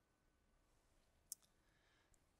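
Near silence: faint room tone, with one short, faint click a little over a second in.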